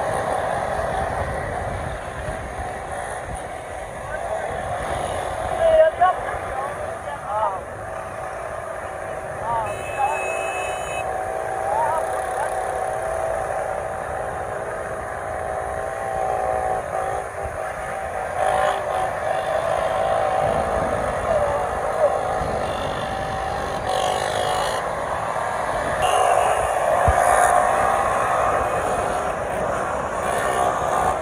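Several small motorcycle engines running at steady high revs as riders hold wheelies, with voices calling out over them. A brief high-pitched tone sounds about ten seconds in.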